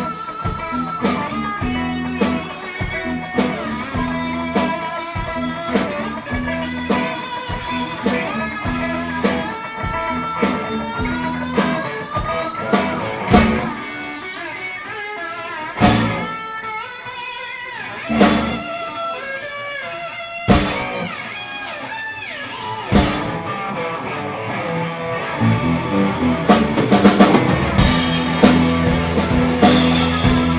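Live blues-rock band playing an instrumental stretch: electric guitar lead lines with a rising string bend over bass and drums. In the middle the groove stops and the band hits single loud stabs every two to three seconds, with guitar between them. The full band comes back in near the end.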